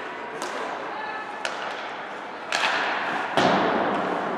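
Ice hockey play in a rink: sharp clacks of sticks on the puck, then a swell of noise about two and a half seconds in and a loud thud, the loudest sound, about three and a half seconds in, over faint voices.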